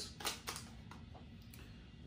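A few light clicks and taps in the first half-second as a plastic-packaged fishing lure is handled and set down on the table, then quiet room tone.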